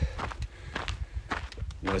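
Footsteps of a hiker walking on a dry dirt trail, several steps each second, over a low rumble on the microphone.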